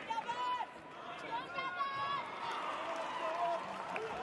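Several people shouting and calling out in a large sports arena during a taekwondo bout, sustained calls overlapping over a steady hall background.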